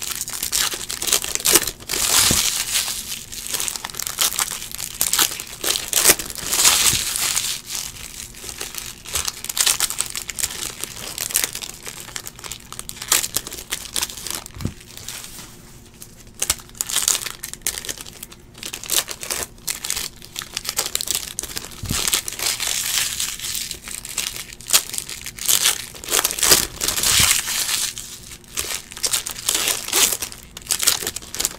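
Foil wrappers of 2018 Bowman baseball card packs crinkling and tearing as they are ripped open by hand, in irregular bursts, with an occasional sharp click.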